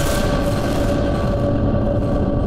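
News channel logo sting: a loud rushing, booming sound effect that sets in abruptly and holds steady, with a faint sustained tone running through it.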